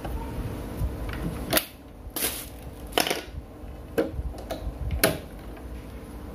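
A handful of sharp clicks and knocks, about one a second, with a short scrape about two seconds in: handling noise from plugging a set-top box's power lead into the mains and moving its cables.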